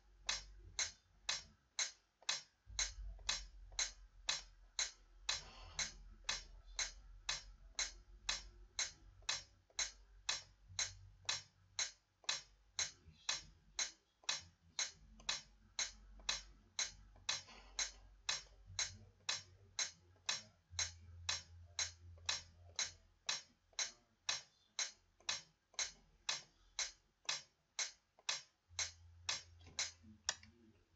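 Metronome ticking steadily, about two clicks a second, with a faint low hum between the clicks.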